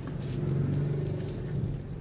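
Car engine running, heard from inside the cabin as a steady low hum that swells slightly about half a second in and eases near the end.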